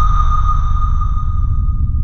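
Cinematic sound-design effect: a deep, steady rumble under a single high ringing tone that slowly fades away.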